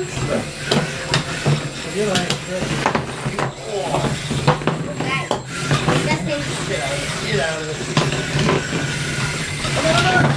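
Small radio-controlled combat robots clattering around a tabletop arena, with frequent sharp clicks and knocks as they bump into each other and the arena walls. People's voices can be heard over them.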